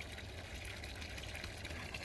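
Faint, steady rush of circulating koi pond water, from the pond's running filter pumps and air stones.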